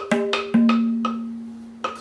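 Tabla being played by hand: a few quick, sharp strokes, then a ringing stroke about half a second in whose clear pitched tone holds and slowly fades.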